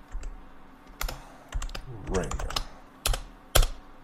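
Typing on a computer keyboard: a few separate, irregularly spaced keystroke clicks while a filename is entered.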